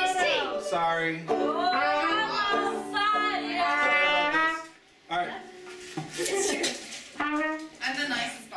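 Trumpet playing a melody over a small acoustic band with banjo. The music stops abruptly about five seconds in, and loose voices follow.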